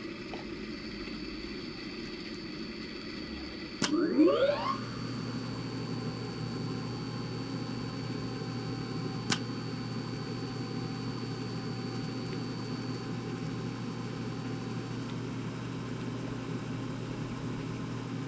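Simulated electric motor of the mixing process starting: a click about four seconds in, a short rising whine as it spins up, then a steady hum. Another single click comes about halfway through.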